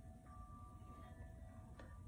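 Near silence: room tone with a faint low rumble and a couple of faint, thin steady tones.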